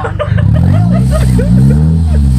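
The half-cut car's engine revs up: its pitch climbs for about a second and a half, then eases back down.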